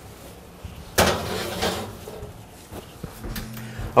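A cast iron skillet going into an oven: a sharp metal clank about a second in as it meets the oven rack, followed by a brief rattle and scrape of the rack, then a few faint knocks.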